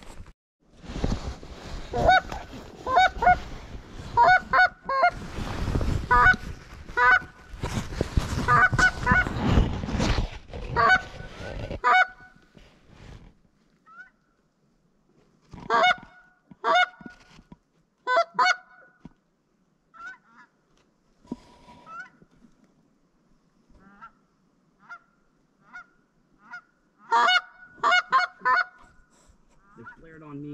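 Lesser Canada geese honking and clucking in quick runs of short calls, with a rushing noise under them for the first twelve seconds or so. The honks then thin out into fainter scattered clusters, with a louder burst near the end.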